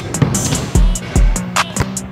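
Background music with a steady drum beat: kick drum thumps and snare or hi-hat strokes over a held bass note.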